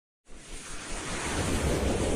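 Whoosh sound effect for an animated intro: a windlike swell of noise that starts a moment in and grows steadily louder.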